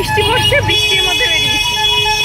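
Road traffic on a busy, rain-wet city street, a steady low rumble under a woman's talking, with a held tone near the middle.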